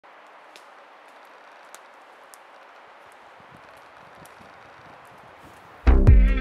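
Soft, steady rustle of forest ambience with a few faint ticks, then the song's electronic pop music cuts in loudly with a sharp beat just before the end.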